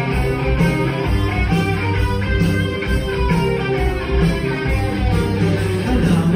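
Live rock band playing with two electric guitars to the fore over bass and drums. There is no singing in this passage.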